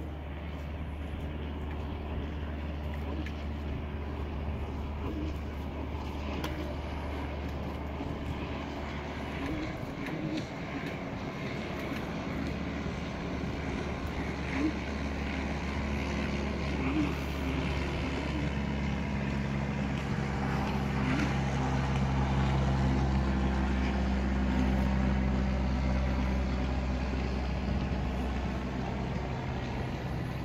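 Propeller engine of a low-flying banner-tow plane droning overhead, growing steadily louder and loudest about three-quarters of the way through before easing slightly.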